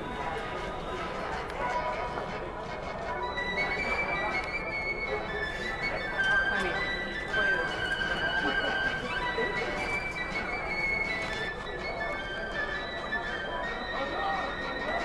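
Background music playing in an airport terminal over a steady murmur of people's voices.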